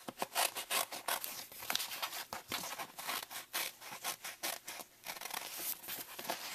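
Small scissors snipping through a vinyl rub-on transfer sheet in a quick run of short, irregular cuts, with a brief pause near the end.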